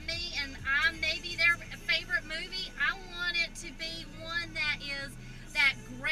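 A woman talking inside a car cabin, over the car's low, steady hum.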